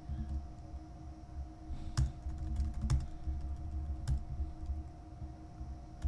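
Typing on a computer keyboard: a run of soft key clicks, with a few sharper clicks about two, three and four seconds in, over a faint steady hum.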